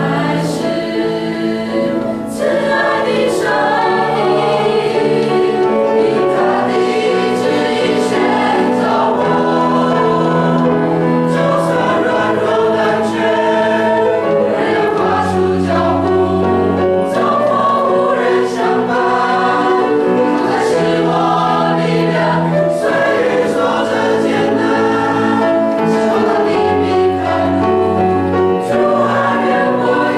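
A choir singing a Christian hymn, with long-held bass notes underneath.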